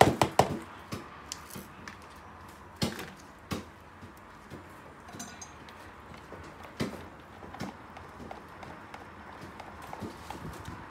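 Hand stirring of a thick emulsified cream in a plastic jug: scattered clicks and knocks of a spatula and a stick blender against the plastic. A cluster of sharp knocks comes at the very start, with a few single ones about three and seven seconds in.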